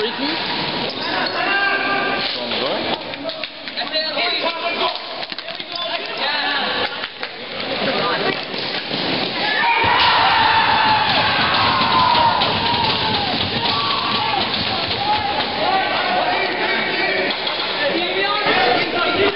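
Ball hockey players and onlookers shouting and calling out, with scattered knocks of sticks and the ball on the playing floor. The voices grow louder about ten seconds in.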